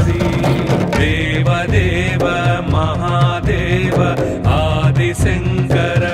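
Hindu devotional song: a voice singing in a chanting, mantra-like style over instruments with a steady beat.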